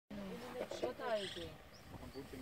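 Speech: a person's voice talking, with a rising pitch about a second in; no other sound stands out.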